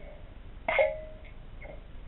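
Quiet room with a single short click of metal airsoft magazine parts being handled, about two-thirds of a second in, with a brief ring after it, and a fainter tap near the end.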